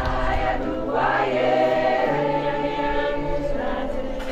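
A mixed choir singing in several-part harmony, holding long sustained chords.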